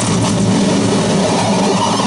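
Harsh noise from a contact-miked metal plate fed through fuzz and distortion pedals and a filter bank: a loud, dense, steady wall of distorted noise with a heavy low drone underneath.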